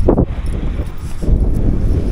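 Wind rumbling on a handheld camera's microphone, with a knock of handling at the start and uneven rustling as the camera is carried along.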